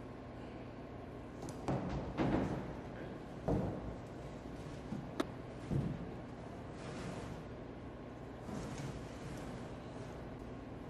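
A large OSB sheet being set down on the top of a machine enclosure and shifted into place: a series of wooden knocks and thumps, loudest in the first four seconds, with one sharp click about five seconds in, over a steady low hum.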